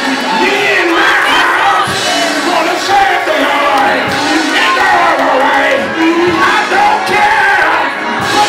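Loud gospel church music: a voice singing through a microphone over the band, with the congregation's voices joining in.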